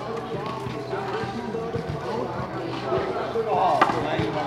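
Indistinct voices of people talking in the background, with one sharp smack just before the end, like a rubber handball bouncing on the concrete court.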